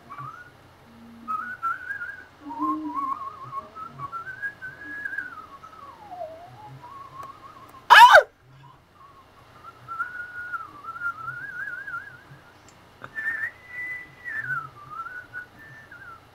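A person whistling a wandering tune, one pitch sliding up and down with quick trills and short breaks. About halfway through comes a brief, very loud shrill burst, the loudest sound here.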